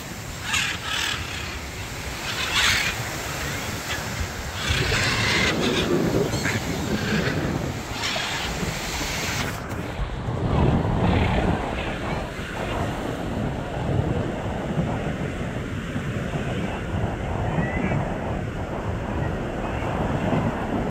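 A flock of parrots flying overhead, giving harsh squawking calls every second or so through the first half, the calls thinning out later, over a steady background noise.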